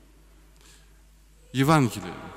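A man's voice in a large church: a short pause of quiet room tone, then speech resumes about one and a half seconds in.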